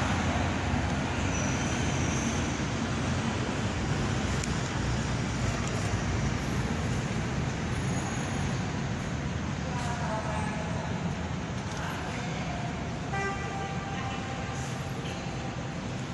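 Steady low rumble of street traffic, with faint, indistinct voices in the second half.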